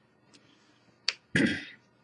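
A man's mouth noises: a sharp lip smack about a second in, followed by a short breath.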